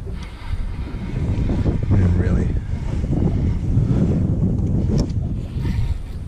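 Wind buffeting the microphone: a loud, low, uneven rumble, with faint voices in the background.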